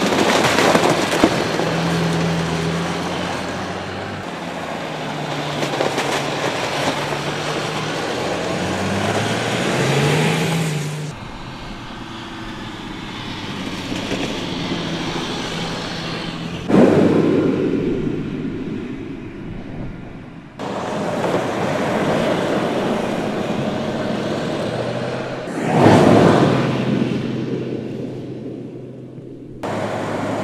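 Mercedes-Benz GLS SUV driving on a snow-covered road: the engine note rises and falls under throttle over the hiss of tyres on snow. The car passes close by twice, swelling loud about halfway through and again near the end.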